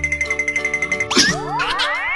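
Cartoon sound effects over children's background music: a rapid, steady high trill for about a second, then a sharp hit and a long rising boing.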